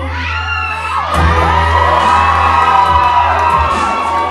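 Audience whooping and cheering over dubstep-remix pop music with a heavy bass.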